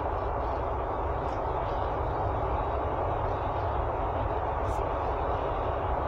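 Steady road and engine noise inside a moving vehicle's cabin: an even low rumble with tyre hiss on pavement.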